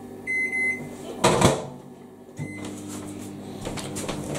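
Microwave oven being set and started: a half-second beep, a clunk about a second in as the door shuts, then a short beep at which the oven starts its steady running hum.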